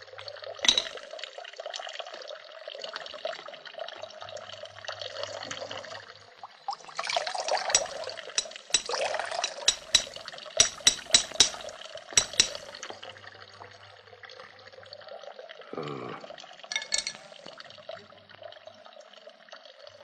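Water running steadily from the spout of a stone spring. About halfway through comes a quick run of sharp metallic taps and clinks.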